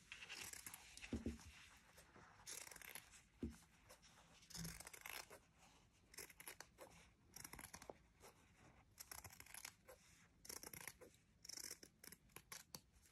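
Metal scissors cutting light blue fabric around a marked circle: quiet crisp snips in short runs, with brief pauses between them as the cloth is turned.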